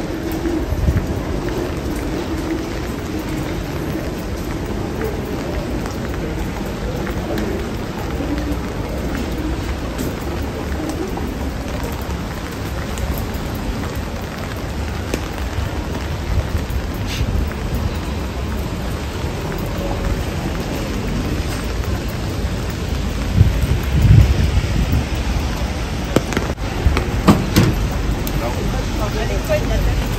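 Steady rain falling on a wet city street, an even hiss, with a low rumble underneath that swells louder near the end along with a few sharp knocks.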